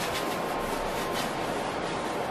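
Hand sanding block rubbed back and forth over a cured epoxy surface as a steady scratchy rasp. The sanding scuffs up the old coat so the next layer of epoxy will bond.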